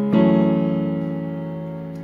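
A chord played on a Yamaha Portable Grand digital keyboard's piano voice, struck just after the start and held, fading slowly.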